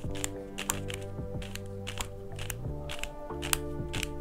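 X-Man Ambition 4x4 magnetic speedcube turned close up, giving irregular plastic clicks, several a second, as its layers are rotated. The clicks come with turning the middle layers, which the owner puts down to magnets not seating snugly or a quirk of this cube. Background music plays underneath.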